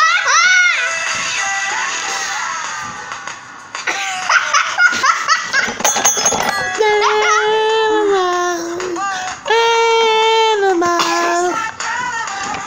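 A high voice squealing and giggling at first, then holding long wordless sung notes that step down in pitch.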